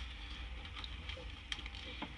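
Faint handling noise, with light rustles and a soft click about one and a half seconds in, over a low steady hum.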